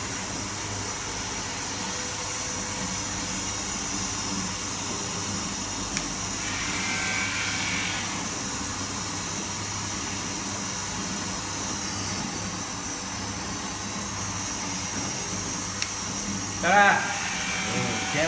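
HCD-2A bottle flame treatment machine running with a steady hum and a constant hiss. A voice comes in briefly near the end.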